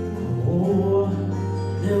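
Live band music in a pause between sung lines, with a rising slide in the instrumental tones about half a second in. The singing comes back in at the very end.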